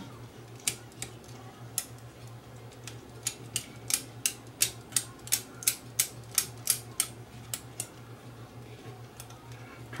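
Cotton swab scrubbing the spring terminals in a remote control's battery compartment, cleaning off leaked alkaline battery corrosion. It makes short scratchy strokes, a few at first, then about three a second, stopping about eight seconds in.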